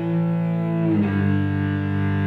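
Solo cello played with the bow: a low note held steadily beneath a higher line that moves to a new note about a second in.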